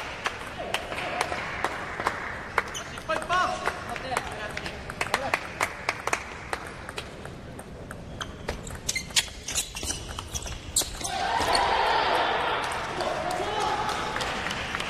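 Celluloid-type table tennis ball clicking sharply off paddles and the table, scattered clicks at first, then a quick rally of clicks about eight to eleven seconds in. Right after the rally, shouts and clapping swell up as the point is won.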